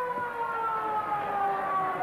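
Ground siren sounding the end of the first half: one long held tone that slowly falls in pitch.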